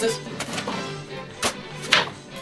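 Kitchen knife cutting through an apple, with a few sharp knocks of the blade on a plastic cutting board, over background music.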